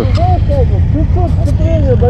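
People talking over a loud, steady low rumble.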